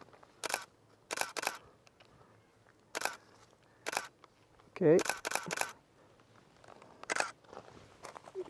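Canon DSLR shutter firing, single frames and short bursts of about three clicks, roughly every second.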